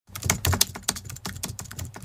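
Typing sound effect: a rapid, irregular run of keyboard key clicks accompanying on-screen text being typed out.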